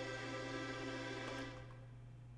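Sampled violin chord from Kontakt, held steady and then fading out about a second and a half in.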